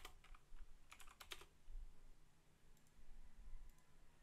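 Faint computer keyboard keystrokes: a few quick taps at the start and a short run of taps about a second in.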